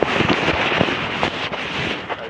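Loud, rough rushing and rattling noise with many sharp knocks, as from a microphone being jostled and moved about outdoors.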